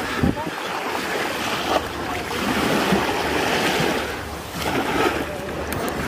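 Busy beach ambience: small waves washing on the shore and wind buffeting the microphone, with the voices of bathers mixed in.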